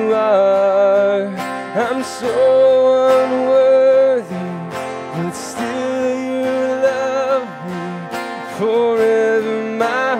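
A man singing a slow worship song while strumming an acoustic guitar, holding long notes of a second or two.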